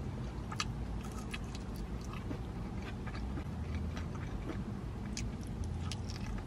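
A person chewing and biting fried chicken, with scattered small clicks from the mouth, over a steady low hum.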